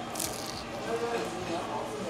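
A bite into a crisp fried boudin egg roll, with a short crunch just after the start, then chewing, over a faint murmur of background voices.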